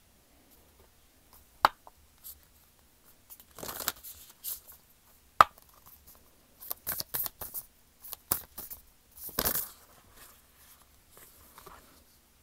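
A deck of cards being shuffled and handled: a few short bursts of cards sliding and riffling together, with a couple of sharp taps.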